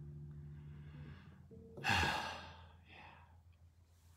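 The last chord of a long-necked touch-style string instrument rings on and fades away within the first second. Then a man breathes out in a loud sigh about two seconds in, with a softer breath near three seconds.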